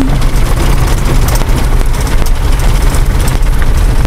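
Car running along the road, heard from inside the cabin: a steady low engine and road rumble.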